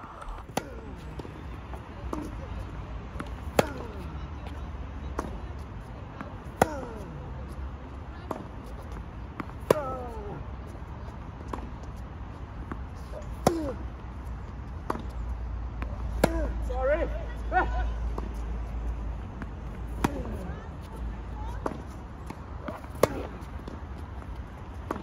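Tennis rally on a hard court: loud racket-on-ball strikes of backhand groundstrokes about every three to four seconds, with fainter hits and ball bounces from the far end in between.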